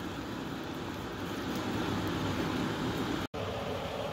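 Steady hiss of background noise with no distinct events, broken by a brief dropout about three seconds in.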